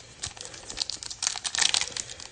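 Foil wrapper of a 2021 Select football card pack crinkling and tearing as it is pulled open, a dense run of sharp crackles that grows busier in the second half.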